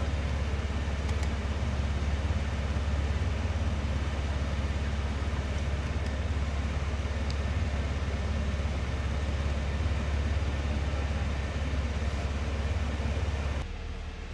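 Steady low hum of a car engine idling, unchanging, cutting off suddenly near the end.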